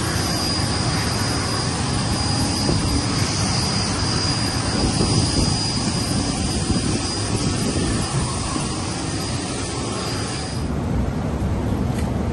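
Jet aircraft running on the airport apron: a loud, steady rush with a thin high whine. About ten and a half seconds in, the whine and the upper hiss cut off and give way to a duller, lower hum, as heard inside the aircraft cabin.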